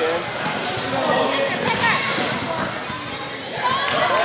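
A basketball being dribbled on a wooden gym floor, under people's voices calling out.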